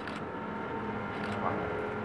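Hall room noise with a faint, indistinct voice about halfway through and a couple of small sharp clicks.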